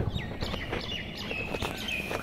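Birds calling: a run of short high chirps with a held whistled note near the end.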